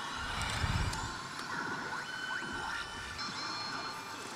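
Pachislot machine (SANKYO's Revolution Machine Valvrave) playing its electronic game music and effects during a rush mode, with a deep boom in the first second.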